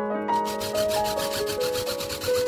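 Cordless drill driving a screw into a thin sheet-metal case, heard sped up as a fast, evenly repeating rasp that starts about a quarter of the way in. Piano music plays throughout.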